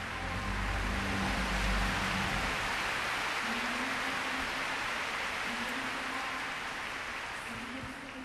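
Large arena crowd applauding, swelling over the first two seconds and then slowly fading.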